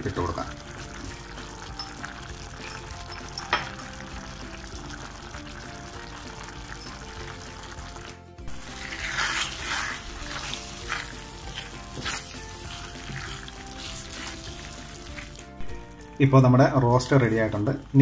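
Beef and masala gravy sizzling in a steel pan. From about the middle for some seven seconds a spoon stirs and scrapes through it, louder, with scattered clicks against the pan. Soft background music with held notes runs underneath, and a voice speaks near the end.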